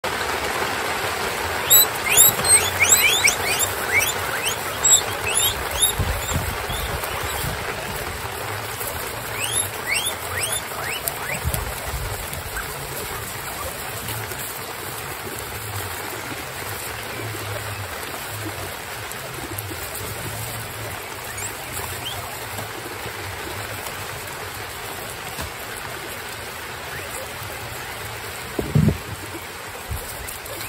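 A crowd of guinea pigs rustling in straw and munching lettuce: a steady crackling hiss. Flurries of short, high, falling squeaks come about two seconds in and again around ten seconds, with a soft thump near the end.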